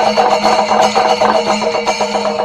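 Kerala temple percussion ensemble (chenda melam) playing: chenda drums struck in fast, continuous strokes over the steady ringing of ilathalam hand cymbals.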